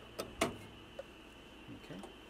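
Two sharp plastic clicks close together, the second louder, as the keypad's ribbon-cable connector is worked off the control board of a Samsung microwave, then a faint tick about a second in.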